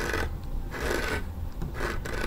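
Repeated rough rubbing and rasping strokes, several about half a second apart: a handheld phone brushing and scraping against a closet door and hanging clothes as it is pushed into the closet.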